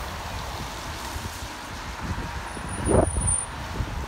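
Street traffic: a van drives past on the road, over a steady low rumble, with a louder rush about three seconds in.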